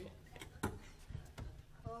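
A quiet pause with a low steady hum and a few faint clicks and knocks, then a short spoken word near the end.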